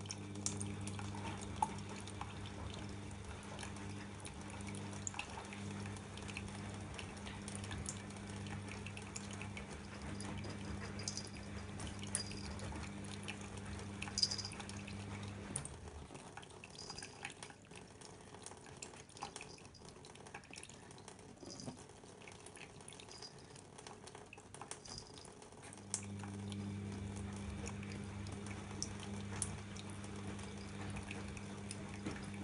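A thin stream of water running from a kitchen tap into a stainless steel sink, with scattered small drips and splashes as a cat paws and drinks at it. A steady low hum runs under it, drops away at about the middle and returns near the end.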